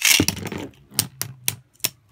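A Beyblade is launched into a plastic stadium: a burst of whirring and clatter as it lands, then sharp clicks about every quarter second as the two spinning tops strike each other.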